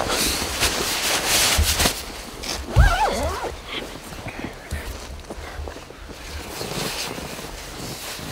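Rustling of clothing and gear being handled, with a couple of low thumps, and a short wavering voice sound about three seconds in.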